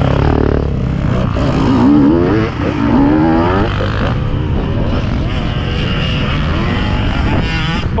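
Enduro dirt-bike engines running as riders pull away on a dirt track, one engine revving up and down in rising and falling sweeps about two to three and a half seconds in.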